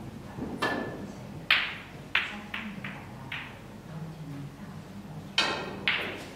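Several short, sharp knocks at uneven intervals over a steady low hum.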